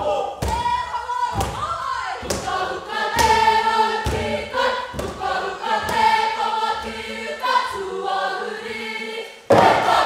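Māori kapa haka group singing in unison, with a heavy thud about once a second keeping the beat. About half a second before the end the voices burst in much louder.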